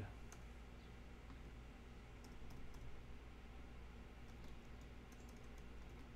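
Faint, scattered keystrokes on a computer keyboard: a few light clicks in small clusters, over a low steady hum.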